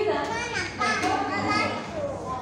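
Chatter of several voices talking at once, with no other distinct sound standing out.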